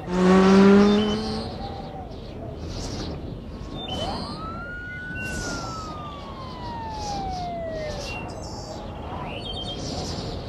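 Police siren sound effect: a single wail that rises quickly about four seconds in, then falls slowly over the next four seconds. It is preceded by a loud, short pitched tone in the first second and a half, over a steady background hiss.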